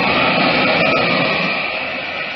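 Radio-drama sound effect of Superman in flight: a steady rushing whoosh of wind that slowly dies down toward the end.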